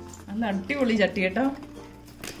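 A woman speaking, with background music underneath.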